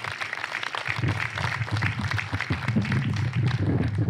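Audience applauding as a new speaker is introduced, a dense patter of clapping with a few voices mixed in.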